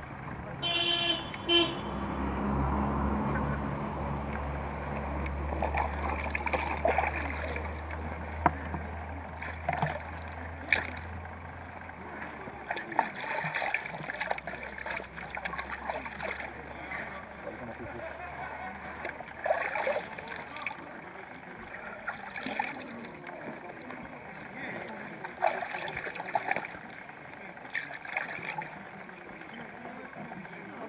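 Distant shouts and calls of footballers across an open pitch. A short horn-like toot sounds about a second in, and a low engine rumble runs from about two seconds to about twelve seconds in.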